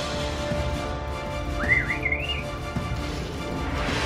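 Background music, with one short warbling whistle that rises and falls a little before halfway through: the electronic beep-whistle of an R-series Droid Depot droid.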